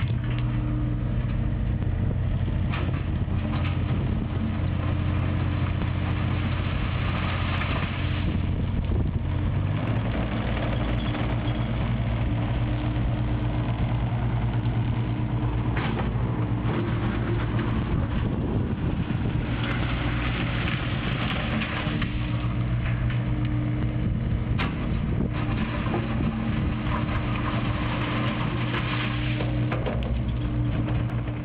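Diesel engines of excavators running steadily on a building site: a constant low engine hum with a rushing noise that swells and fades as the machines work.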